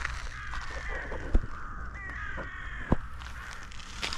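A bird gives harsh, slightly falling calls, once about a second in and again from about two seconds in, over a steady low rumble. Two sharp knocks, the loudest sounds, come about a second and a half apart.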